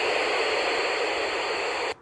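Steady FM radio hiss from a Yaesu FT-817ND's speaker: open-squelch static on the SO-50 satellite channel between transmissions, with no voice coming through. It cuts off suddenly near the end.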